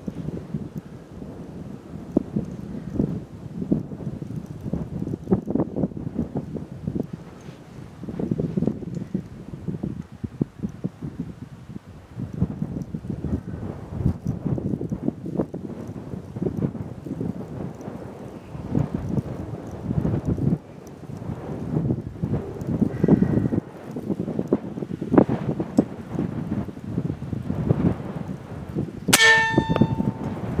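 Gusty wind buffeting the microphone. About a second before the end, a single shot from a .357 American Air Arms Slayer airgun: a sharp crack followed by a brief ringing tone.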